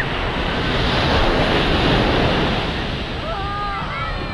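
Surf washing up onto a sandy beach, with wind on the microphone; the wash swells about a second in and eases off again.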